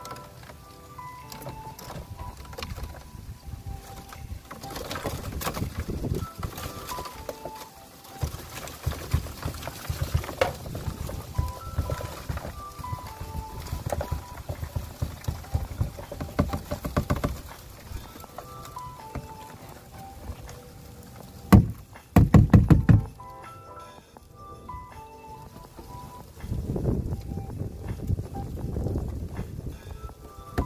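Background music with a simple melody, over a dry clicking rattle of dubia roaches sliding and tumbling out of a plastic tub onto cardboard egg crates. A loud knock comes about 21 seconds in, followed by a short burst of loud clattering.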